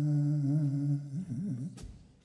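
A man's voice holding one long low note close to the microphone, ending about a second in with a few short wavering notes that fade away.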